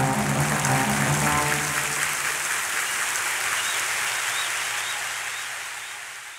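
Soundtrack music ending: low held notes stop about two and a half seconds in, leaving an even, hissing wash that slowly fades out.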